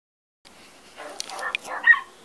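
A moment of dead silence, then a dog barking a few short, high barks, the loudest just before the end.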